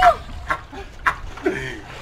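A man laughing: a loud high-pitched burst at the start, then quieter broken snickers.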